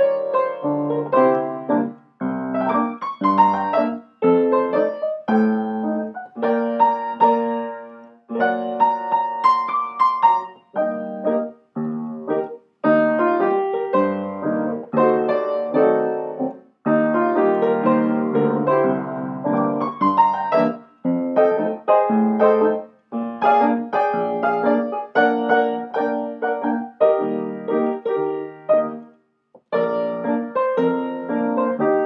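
Acoustic grand piano played solo: a song arrangement of chords and melody in phrases, with short breaks in the sound between some of them.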